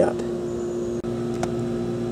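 A steady low machine hum with a few even tones and no change in level, like an electric motor running.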